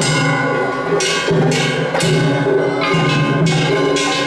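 Festival ohayashi from a float: taiko drums and clanging kane gongs beaten together in a loud, repeating rhythm, the metal strikes ringing on.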